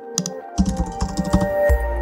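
Computer keyboard typing, a quick run of key clicks, over electronic background music; a deep bass note comes in near the end.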